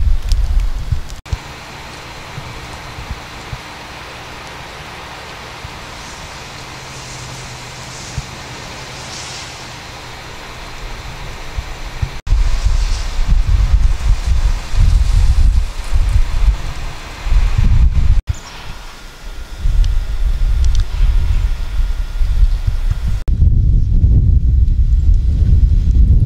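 Wind buffeting an outdoor camera microphone, heard as a loud gusting rumble across several shots joined by sudden cuts. A quieter stretch near the start carries a steady low hum.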